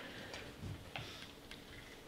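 A few faint, sharp clicks at irregular spacing, with a soft low thump about two-thirds of a second in.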